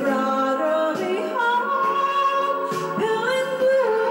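A woman singing karaoke into a handheld microphone, holding long notes that step and slide between pitches.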